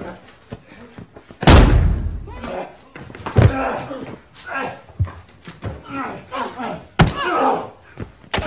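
Movie fight-scene soundtrack: a man and a woman grappling on a floor, with several heavy body impacts, the loudest about a second and a half in, and voices straining between the hits.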